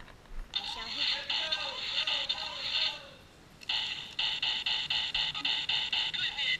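Tactical laser tag gun on automatic fire, its electronic shot sound repeating about four times a second in two long bursts with a short pause in the middle.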